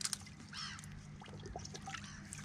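A bird gives one short call about half a second in, over a faint trickle of water.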